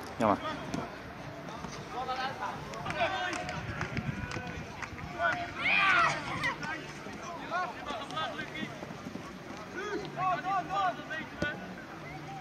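Football players calling and shouting to each other across an outdoor pitch: short, scattered shouts from several voices at different distances, the loudest about six seconds in.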